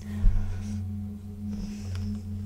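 Soft ambient background music: a low, steady drone that slowly swells and fades, with faint higher tones. A light low knock comes about a quarter second in.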